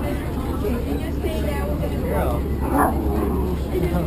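A dog barks inside a bus crowded with people and dogs, loudest nearly three seconds in, over passengers' chatter and the steady low hum of the bus engine.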